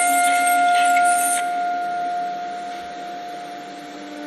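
Contemporary chamber music for clarinet, alto saxophone and electronic fixed media: two long notes held steady at different pitches, with a noisy hiss over them that stops about one and a half seconds in, the whole growing gradually quieter.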